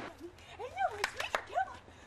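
Chacma baboons calling: a run of about four short calls, each rising and falling in pitch, with a few sharp clicks among them.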